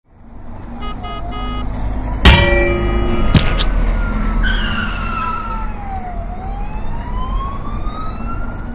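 An emergency-vehicle siren wailing, its pitch falling slowly and then rising again, over a steady noisy background. Two sharp, loud knocks or crashes come just before the siren starts, a few seconds in.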